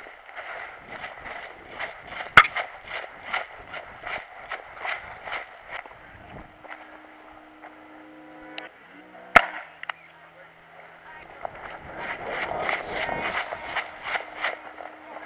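Footsteps through grass and leaf litter at about two steps a second, with two sharp cracks, one about two seconds in and one about nine seconds in. From about six seconds in, low held notes of music come in under the steps.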